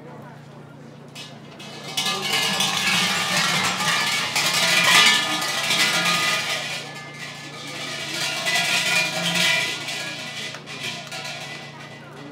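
Shinto shrine bell (suzu) shaken by its rope, a metallic jangling that starts suddenly about two seconds in and goes in two bouts before fading near the end.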